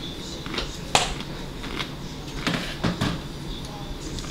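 A man biting and chewing the Paqui One Chip, a spicy corn tortilla chip: a few sharp crunches, the loudest about a second in and a cluster more a little before three seconds.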